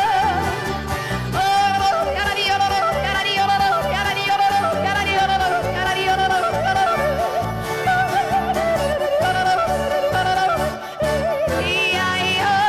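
Swiss-style yodeling, the voice flipping quickly between low and high notes, over a band playing a steady, bouncy beat.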